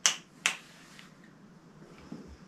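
Two sharp clicks about half a second apart, the first slightly louder.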